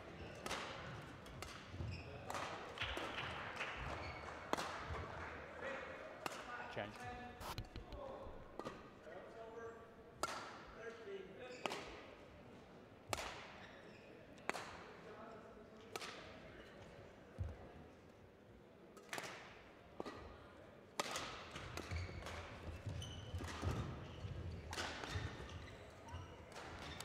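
Badminton rally: sharp racket strikes on the shuttlecock about every second and a half, each ringing briefly in the large hall, with short squeaks of the players' shoes on the court floor.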